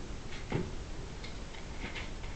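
Faint room noise with scattered small irregular clicks and ticks, no steady rhythm.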